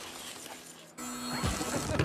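Animated action-film soundtrack: music mixed with sound effects, low and thin for the first second, then cutting in loud about a second in.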